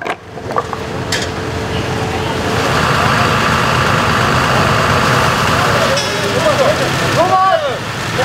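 Fire engine and its pump running, a loud steady mechanical noise, with a single knock about a second in. Voices of the crew come in from about six seconds in.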